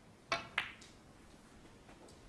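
Snooker cue tip striking the cue ball, then the cue ball clicking into the blue about a third of a second later as the blue is potted.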